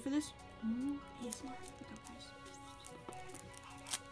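Quiet background music with faint crinkles and clicks of plastic shrink wrap being peeled off a deck of trading cards, and a short hummed vocal sound about half a second in.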